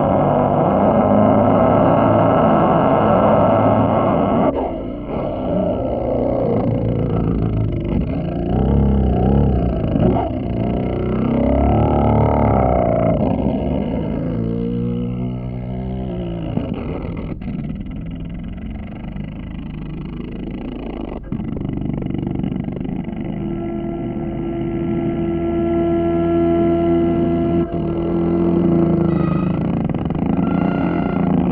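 Solo double bass in free improvisation: dense, growling low tones with sliding, wavering pitches through the middle, settling into a steady held higher note with overtones near the end.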